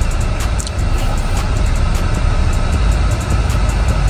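Steady low rumble and hiss inside a car cabin, typical of the car's engine idling with the ventilation running.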